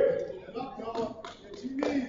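A few sharp hand claps, scattered through the moment, among brief shouted voices from the sidelines of a wrestling match.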